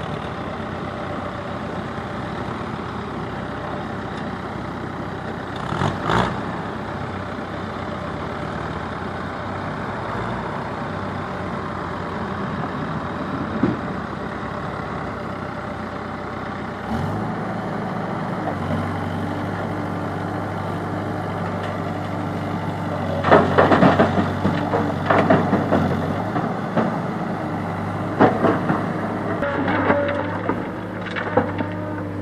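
Diesel engines of a CASE backhoe loader and a tractor running steadily, with a brief clatter about six seconds in. From about halfway a steadier, lower engine hum joins, and near the end rocks clatter and scrape repeatedly as the loader's bucket works the stone pile.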